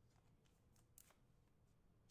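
Near silence, with faint rustles and a few soft clicks of trading cards being handled and slid from one to the next in the hands. One click, about a second in, is a little louder than the rest.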